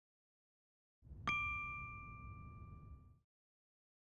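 A single bright ding, a chime-like logo sound effect, struck once about a second in, ringing on a few clear tones and fading away over about two seconds.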